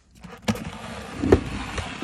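HO-scale Rivarossi Genoa 4-4-0 model locomotive starting off and running along the track, its tender motor and worm-gear drive running with wheels rolling on the rails, with a sharp click about half a second in and another near 1.3 s. The worm gear is worn and, by the owner's account, tends to lock up.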